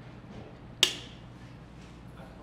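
A single sharp click just under a second in, over faint room tone.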